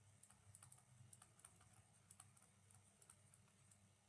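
Faint, irregular light clicks and taps of handwriting being entered on a digital tablet, several per second.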